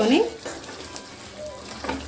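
Chicken curry sizzling in a wide metal pan while a spatula stirs it, with a couple of light ticks from the spatula about a second in and near the end.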